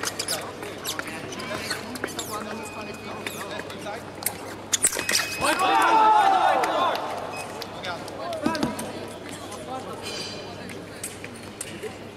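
Fencers' footwork stamping on the piste with short clicks of foil blades meeting, then a loud shout about five and a half seconds in as a touch is scored.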